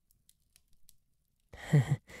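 Near silence with a few faint clicks, then about a second and a half in a man's soft, breathy laugh begins, in short pulses falling in pitch.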